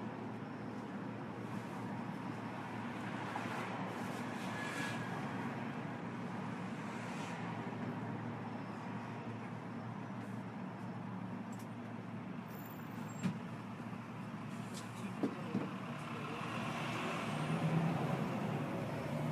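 Steady rumble of road traffic, with a few short sharp clicks in the last third.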